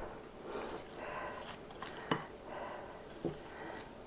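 Wooden spoon stirring dressed, chopped broccoli and cauliflower in a glass bowl: soft wet squishing and rustling of the vegetables, with two light knocks.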